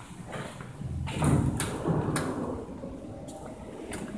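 Automatic sliding glass entrance doors opening, with a low rumble starting about a second in and a few sharp clicks.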